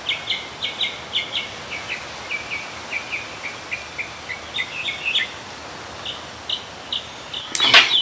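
A small bird chirping over and over in short, quick, high chirps that slide downward, two or three a second, with a brief pause past the middle before they start again.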